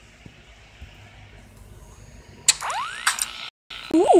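Faint hiss, then about two and a half seconds in the film trailer's sound effects start: a sharp click, then rising whistle-like tones and further mechanical clicks.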